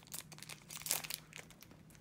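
Foil Pokémon booster pack wrapper crinkling as it is torn open and the cards are pulled out, in irregular crackles with the loudest a little before the middle.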